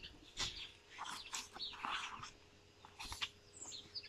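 A picture-book page being turned, paper rustling and flapping over the first two seconds or so, with small birds chirping faintly in short high notes.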